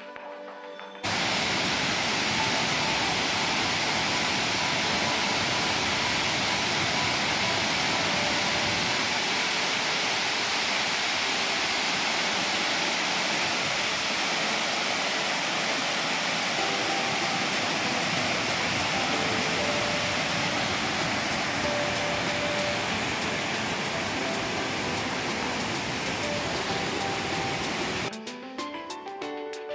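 Waterfall heard close up: a steady, even rush of falling water, starting abruptly about a second in.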